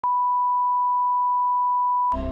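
Steady 1 kHz sine-wave reference tone, the line-up tone laid under a programme's opening slate, holding one unchanging pitch at a constant level.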